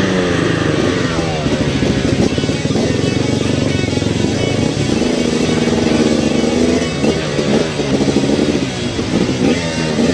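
Dirt bike engines revving and running, the pitch rising and falling with the throttle, mixed with rock music.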